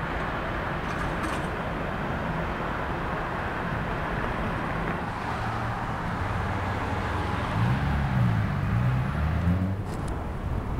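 Steady urban road-traffic noise from passing vehicles, with a low engine hum that wavers up and down in pitch near the end.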